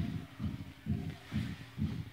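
Soft, dull thuds on padded gym mats in an even rhythm of about two a second, from bare feet and bodies moving on the mats.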